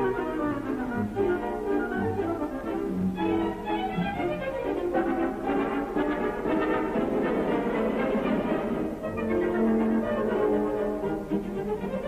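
Orchestral music with strings and brass, on an old, band-limited film soundtrack. It grows denser in the middle and has a quick upward run near the end.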